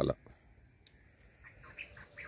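Quiet outdoor ambience after a spoken word: a few faint, short bird chirps about a second and a half in, over a thin steady high-pitched drone typical of insects.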